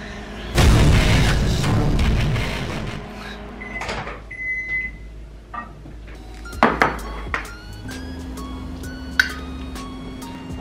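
A loud, distorted burst of sound opens. Then a microwave oven beeps once with a short steady tone, a few sharp clicks follow, and a low steady hum of the running microwave sets in near the end.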